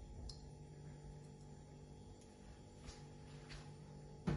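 Near silence: room tone with a faint steady hum and a few soft ticks.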